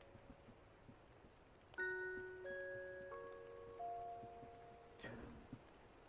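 Four soft chime-like notes, about two-thirds of a second apart. The first comes about two seconds in, and each rings on and fades away by about five seconds.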